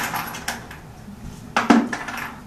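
Small draw tokens clattering against each other in a leather bucket as a hand rummages in it to pull one out: a few sharp clicks, then a louder clatter near the end.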